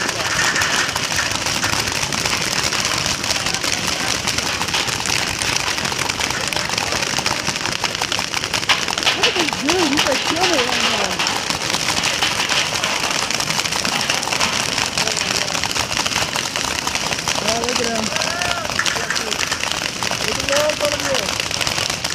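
Many paintball markers firing across the field at once: a continuous dense crackle of rapid pops, with voices shouting now and then.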